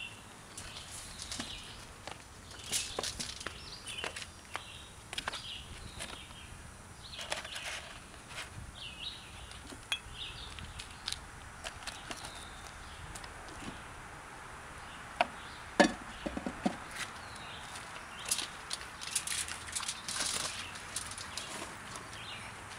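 Scattered knocks, clicks and rustles of bricks being set into a cardboard box and the box being handled, the loudest knocks a little past the middle. Birds chirp faintly in the background.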